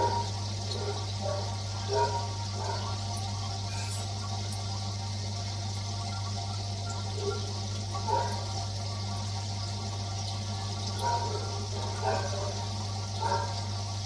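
Submersible aquarium power filter running, its outlet jetting water and air bubbles across the tank surface: a steady low hum under a constant splashing, bubbling hiss. Short louder gurgles break through now and then.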